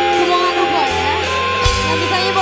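Live band music: a melody line sliding between notes over a steady bass, with a low drum hit near the end.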